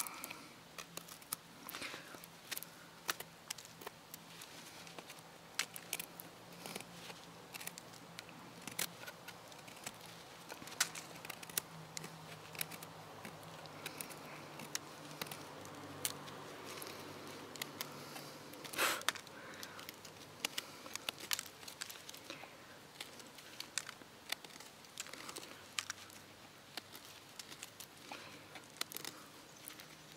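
Morakniv 2000 stainless-steel knife shaving a wooden stick to a point: a string of short, irregular scraping cuts and small snaps of wood, with one louder stroke a little past the middle.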